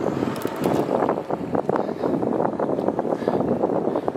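Jet ski engines running nearby, a steady rumble with no pauses.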